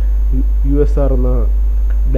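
Loud, steady electrical mains hum, with a man's voice speaking a short phrase over it about a third of a second in.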